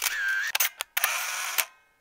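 Camera shutter sound effect over a still photo: a sharp click with a brief whir, a few quick clicks, then a second burst about a second in that dies away.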